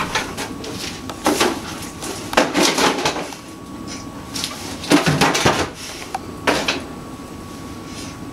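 Kitchen handling noises: four short bursts of clatter and rustling, about a second or more apart, as things are moved about.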